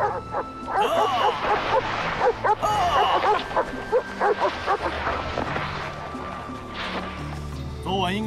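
A team of sled dogs barking and yipping in quick succession over background music.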